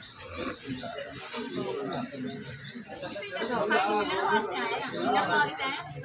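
Men talking in conversation, the voices growing louder and busier about halfway through.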